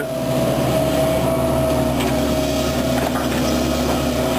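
Tracked hydraulic excavator working as it swings its boom: the engine runs steadily, with a steady high whine over its drone.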